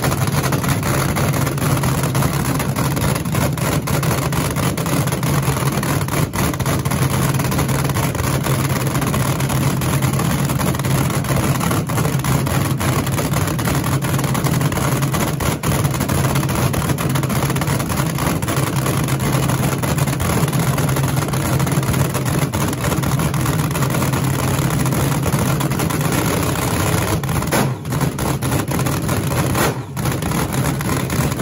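Supercharged V8 of a vintage front-engine dragster cackling at a steady, loud idle through open exhaust headers.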